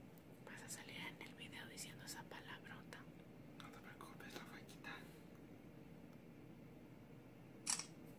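A smartphone camera's shutter sounds once, a short sharp click just before the end, with faint low voices in the first few seconds.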